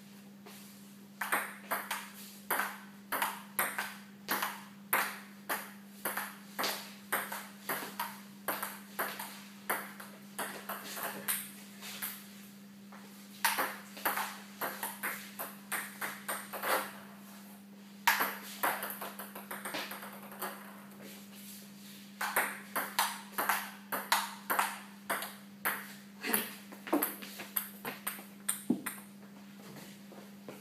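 Table tennis ball clicking off paddles and table in rallies, several sharp hits a second, with short breaks between points. A steady low hum runs underneath.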